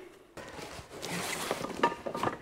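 Rustling and light handling noise, starting about a third of a second in, from clothing and a cardboard parcel as the man moves and picks the box up.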